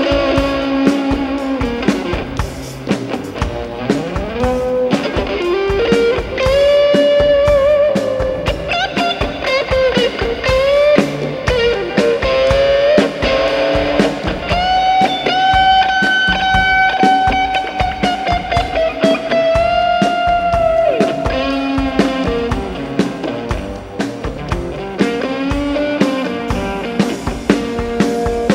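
Stratocaster-style electric guitar playing a lead solo with string bends and vibrato, including one long held note from about halfway through, over an accompanying symphony orchestra.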